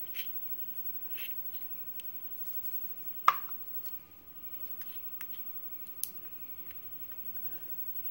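Small metal clicks and taps of steel tweezers working against a brass lock cylinder held in the hand, as pins and springs are picked out of it. The clicks are sparse, and a sharper one about three seconds in leaves a faint ringing after it.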